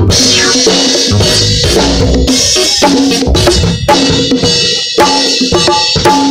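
LP City bongos played by hand close up, a steady stream of strikes on the heads, with a band's drum kit playing along behind.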